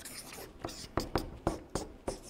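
Marker pen writing capital letters on flip-chart paper: a run of short scratchy strokes, one per line of each letter.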